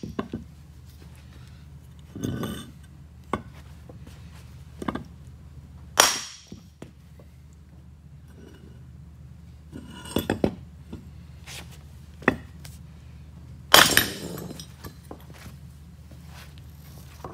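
Sledgehammer blows on the rusted cast-iron turbine housing of an HX35 turbocharger, knocking it off the bearing housing that rust has locked it to: irregular sharp metallic clanks a second or more apart, with lighter clinks around the middle. The loudest strikes, about six seconds in and near the end, ring on briefly.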